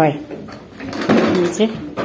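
A voice speaking briefly in a small room, with a few faint knocks and clatter.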